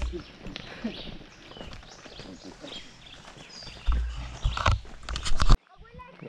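Footsteps crunching on a dirt trail, with low rumbling gusts of wind on the microphone about four seconds in and faint voices. The sound cuts off abruptly near the end.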